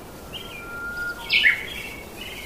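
Birds chirping: short high chirps and a thin steady whistle, then a louder burst of chirps a little past halfway, over a faint steady hiss.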